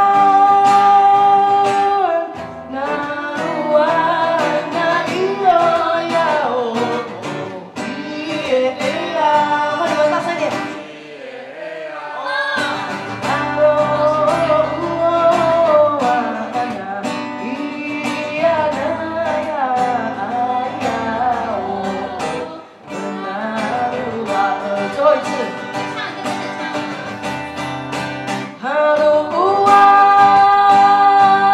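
Nanwang Puyuma folk song performed live: voices singing over acoustic guitar, with held notes at the start and near the end and a short lull about eleven seconds in.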